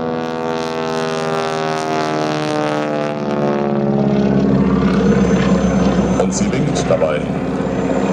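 Boeing Stearman biplane's radial engine and propeller droning as the plane flies its display, a steady many-toned drone whose pitch wavers slightly. It grows a little louder and rougher about halfway through.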